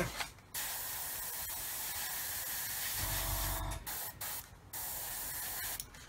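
Airbrush spraying thinned paint at about 15 psi: a steady hiss broken by short pauses, once near the start and twice in the second half.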